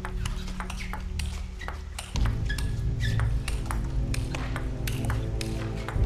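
A table tennis ball being struck by rackets and bouncing on the table in a rally: a quick, uneven string of sharp clicks. Background music with low sustained tones runs under it and grows fuller and louder about two seconds in.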